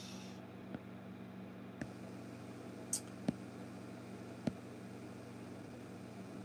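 Quiet room tone: a steady low hum with faint hiss, broken by a few faint, sharp clicks.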